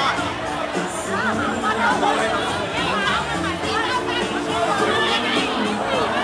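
Music playing in a crowded bar, under the loud, continuous chatter of many voices.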